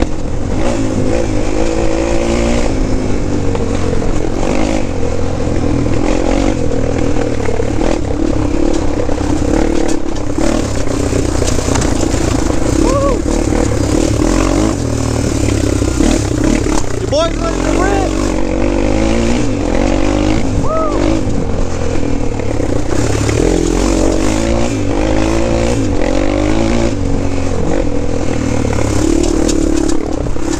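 Honda 400EX quad's single-cylinder four-stroke engine running under constantly changing throttle, its pitch rising and falling as it is ridden along a dirt trail.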